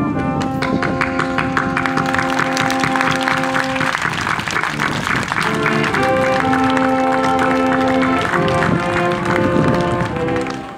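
Band music with sustained brass notes over a fast, steady percussive beat; the held chord changes about four seconds in and again about two seconds later.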